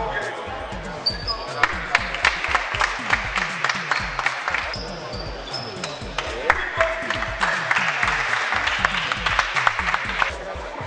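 Basketballs bouncing on an indoor court, many sharp irregular thuds from several balls at once, with voices and music in the background.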